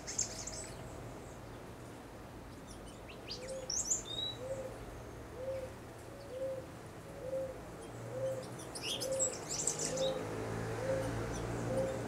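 Birds calling: a regular series of short, low hooting notes, roughly one every half second, starting a few seconds in, with scattered high chirps over them.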